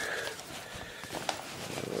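Cloth cargo pants being handled and turned over, with the fabric rustling and a couple of sharp light clicks a little over a second in.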